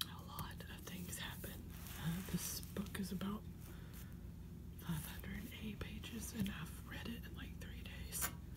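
Soft whispering mixed with scattered light taps and handling noises from a hardcover book being touched and lifted.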